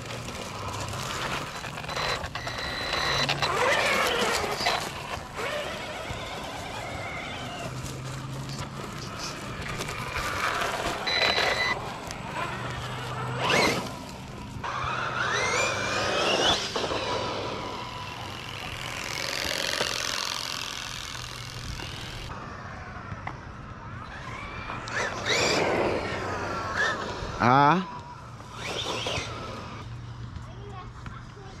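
Electric motor of a Losi Lasernut RC truck whining as it is driven, the pitch rising and falling several times as it speeds up and slows, with a sharp rising sweep near the end.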